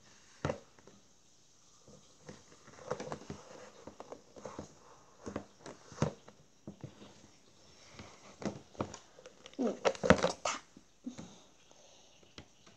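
Hands handling small objects on a wooden table: scattered light taps, knocks and sleeve rustles. Near the end comes a louder cluster of knocks with a short sound whose pitch wavers.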